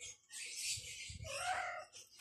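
Rustling noise with one short animal call near the end.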